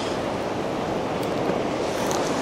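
Steady wash of surf on the beach, an even rushing noise with no breaks.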